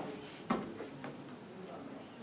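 A sharp knock about half a second in, then a lighter tick about a second in, over faint murmuring voices.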